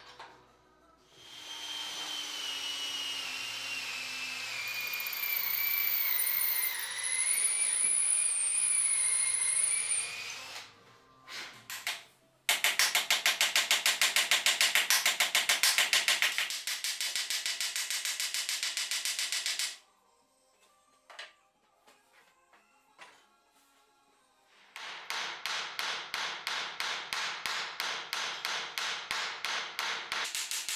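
Hand hammer striking ironwork on an anvil in two runs of quick, even blows, a few a second, each run lasting several seconds. Before them a power tool whines for about nine seconds, its pitch dipping and then rising.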